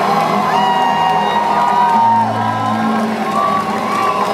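Live concert music with long held notes that slide in pitch, and audience members whooping and cheering over it. A deep bass note sounds for about a second midway.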